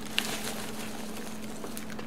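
Hands rummaging through foam packing peanuts in a cardboard box: faint rustling with a few light clicks, over a steady low hum.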